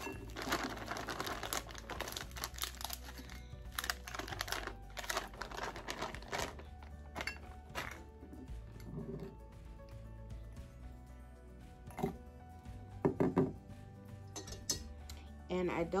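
Plastic bag of frozen berries crinkling as the berries are shaken out and clatter into a glass measuring cup: a dense run of rustles and small knocks over the first six seconds or so, then sparser handling sounds.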